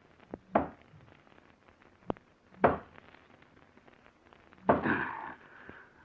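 Radio-drama sound effect of a pickaxe striking a heavy, rotten timber wall to break through it. There are three main blows about two seconds apart, each with a lighter knock, and the last blow is longer and rougher.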